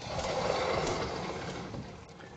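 Vertical sliding blackboard panels being moved along their tracks: a steady sliding noise that fades out shortly before the end.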